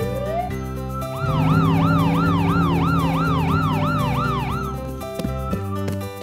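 Ambulance siren sounding in quick up-and-down sweeps, about three a second. It comes in about a second in and stops near the five-second mark, over steady background music.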